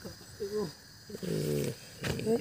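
A person's voice making two short sounds with no clear words: a brief gliding one about half a second in, then a short held one near the middle.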